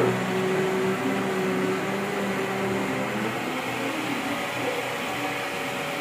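Steady mechanical hum and hiss, with a low hum tone that stops about three seconds in.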